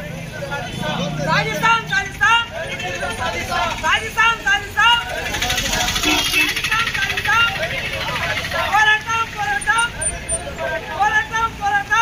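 A crowd of protesters shouting slogans together in repeated calls, with a noisier, more ragged stretch of shouting in the middle.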